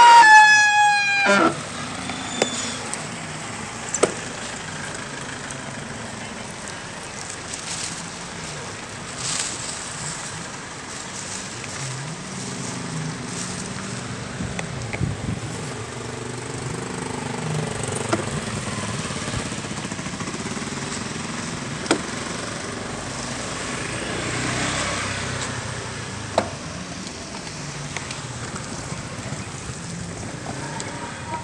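Street traffic ambience on a wet town street: a steady murmur of traffic with a vehicle passing about 24 seconds in and a few sharp clicks. It opens with a loud pitched tone that falls in pitch over about a second and a half.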